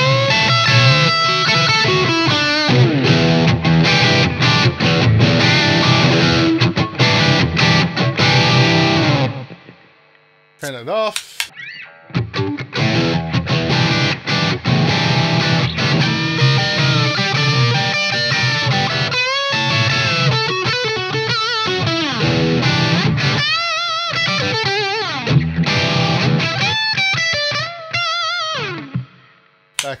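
Fender Telecaster electric guitar played through an overdriven amp with a short delay, sustained phrases ringing out. The playing dies away about a third of the way in, with a click in the gap, then resumes with wavering, bent lead notes before fading near the end.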